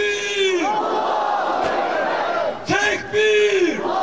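A man shouts a slogan twice through a microphone, a loud held cry each time, and a large crowd shouts back between the calls in a call-and-response chant.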